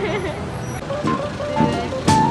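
Background music with a melody of held notes, over street traffic noise.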